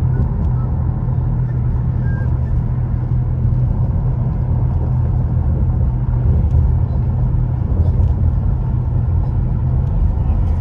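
Steady low rumble of a car driving at low speed, heard from inside the cabin: engine and tyre noise on the road.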